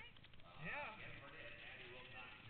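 A person's voice making faint drawn-out sounds that rise and fall in pitch, with no clear words; the strongest comes about two thirds of a second in.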